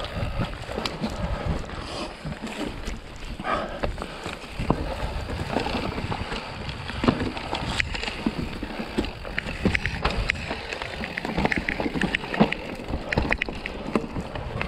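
Mountain bike riding over dry, rooty forest singletrack: tyres rolling over dirt, leaves and roots with a steady run of rattling clicks and knocks from the bike, and a low wind rumble on the microphone. A couple of sharper knocks stand out about halfway through and near the end.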